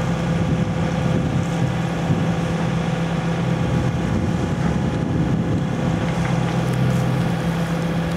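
Boat engine running steadily, an unchanging low drone with a steady hum.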